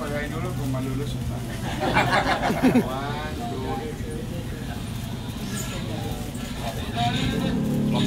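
Background chatter of a crowd of people talking, with voices louder about two to three seconds in, over a steady low hum.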